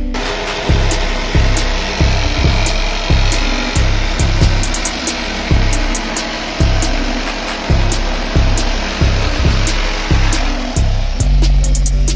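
Background music with a heavy bass beat about twice a second, over a handheld electric blower running with a steady rush of air that starts abruptly.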